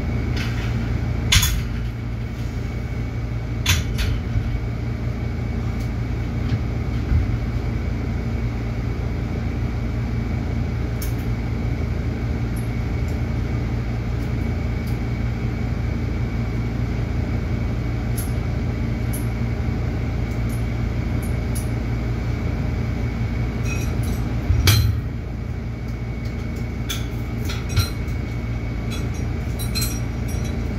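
Steady low mechanical hum of a small gym room, broken by a few sharp metallic clinks and knocks from a cable weight machine's stack and fittings as it is worked, the loudest a knock about 25 seconds in.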